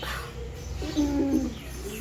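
Birds calling in the background with a short falling call at the start, and about a second in a low cooing sound lasting about half a second, the loudest sound here.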